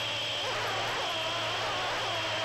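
A small brushless quadcopter's motors whining, the pitch dipping and rising several times as the throttle changes.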